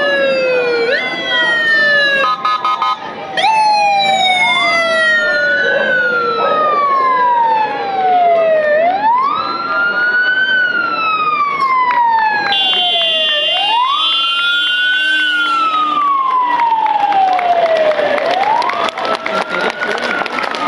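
Police car sirens wailing, each cycle a quick rise then a long slow fall, repeating about every four seconds. Two sirens overlap in the first few seconds, and a steadier high tone joins for a few seconds midway.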